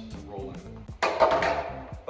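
A solid VEX Push Back game block tossed at the raised clear-plastic lower center goal lands with a sudden clatter about a second in, dying away over most of a second.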